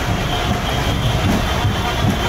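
Loud, steady rumble of heavy road traffic, with big diesel vehicles idling and moving close by amid a crowded street.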